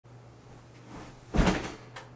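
A person dropping into a padded office chair: one dull thump about one and a half seconds in, dying away quickly, followed by a small click.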